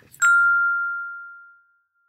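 A single bright chime struck once, its clear tone ringing and fading away over about a second and a half.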